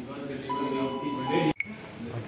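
Lift arrival chime: a higher tone held about a second, then a lower tone, over people talking in the background; it cuts off suddenly about one and a half seconds in.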